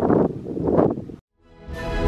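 Wind buffeting the microphone, a rough gusty rumble, cut off suddenly a little over a second in; after a brief silence, background music with sustained tones fades in.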